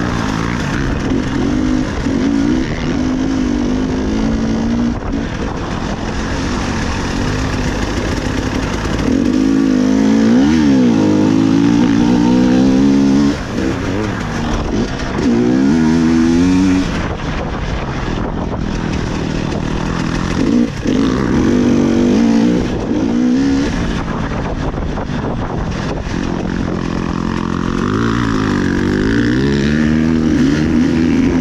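300 cc two-stroke enduro motorcycle being ridden, its engine revving up and down over and over as the rider works the throttle, with the throttle snapped shut a few times, around the middle and later in the stretch.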